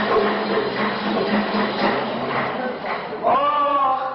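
Voices and music from a live zajal sung-poetry performance. About three seconds in, a single man's voice begins a long held sung note.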